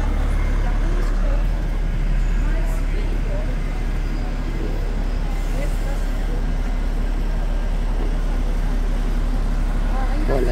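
Steady city street traffic rumble, with a double-decker bus standing close by and faint voices of people passing.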